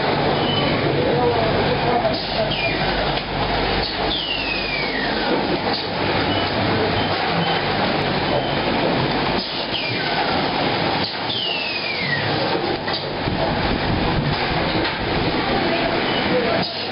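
Bottled-water filling and packing line running: a steady dense machine noise from conveyors and plastic bottles jostling along them. Scattered clicks run through it, and two falling squeals come about four and eleven seconds in.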